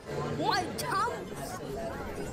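Garbled, pitch-shifted voice sounds with several quick upward-gliding squeaks in the first second, over a low steady hum.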